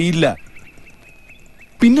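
Men's film dialogue: one man's voice ends a line just after the start, and another begins speaking near the end. In the pause between them a faint, steady, high-pitched chirring sits beneath the speech.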